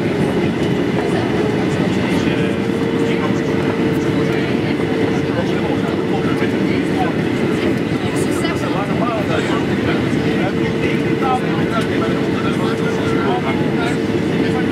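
Steady cabin noise inside a Boeing 737-800 in flight: the rumble and rush of its CFM56 engines and the airflow over the fuselage, with a steady droning tone running through it.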